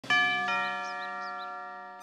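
Two-tone doorbell chime, a higher 'ding' then a lower 'dong' about half a second later, both ringing on and slowly fading.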